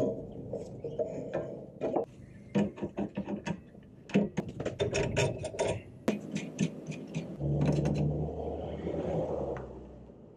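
Hand socket ratchet clicking in quick runs as the roller-bracket nut of a SuperSpring helper spring is tightened onto a van's rear leaf spring, with metal knocks from the bracket. A steady low hum for about two seconds near the end.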